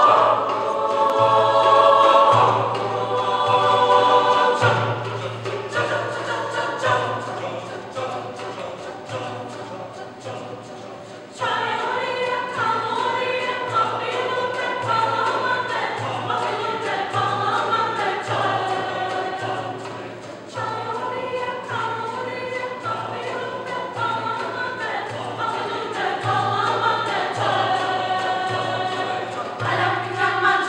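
Mixed choir singing an arrangement of a Romani folk song in harmony, over a low repeating beat. The singing fades, then comes back suddenly louder about a third of the way in, with a brief dip about two-thirds of the way through.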